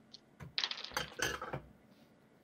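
Dice rolled onto a tabletop: a quick clatter of small hard clicks lasting about a second.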